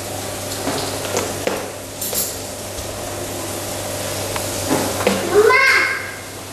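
A few light knocks and clicks over steady room noise with a low hum, and a voice briefly about five seconds in.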